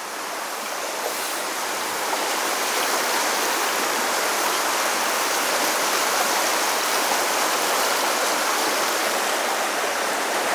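Small river running fast over a riffle: a steady rushing of water that grows a little louder over the first few seconds and then holds even.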